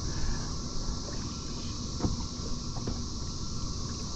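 Open-air boat ambience: a low rumble of wind on the microphone under a steady high insect buzz, with a few faint clicks about halfway through.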